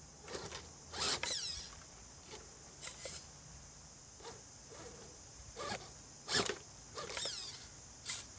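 Electric motor and gear drive of a Redcat Gen8 RC rock crawler whirring in about six short throttle bursts as it climbs rock. The pitch falls away as some bursts let off. A steady high-pitched hiss runs underneath throughout.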